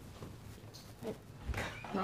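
A woman's brief wordless vocal sounds, with a soft thump about one and a half seconds in.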